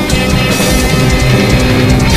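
Loud rock music with a heavy drum beat.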